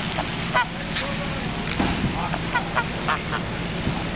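Domestic grey goose honking in a series of short calls, with several close together in the second half.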